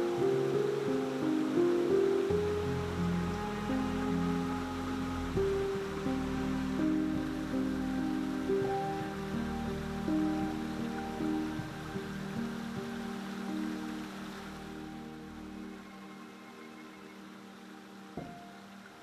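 Background music: a slow melody of held notes that fades gradually toward the end, over a steady rush of water from a shallow mountain stream.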